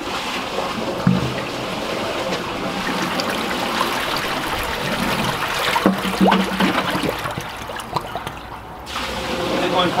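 Water gushing out of a drain pipe into a brick inspection chamber and churning in the standing water below, flushed through by buckets of water poured down a connected drain. The rush eases off abruptly about nine seconds in.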